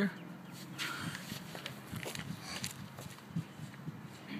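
Footsteps on a concrete garage floor with scattered light knocks and rustles of handling; the car's engine is not running.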